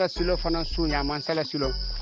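A man talking, over a steady high-pitched whine and low background music.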